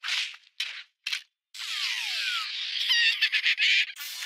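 Cartoon slapstick sound effects: three short swishes, then a longer noisy scramble with falling whistles and squeaky chirps near the end. The sound is thin, with no bass.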